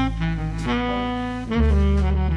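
Slow instrumental jazz: long held melody notes over a bass line that moves to a new note every second or so.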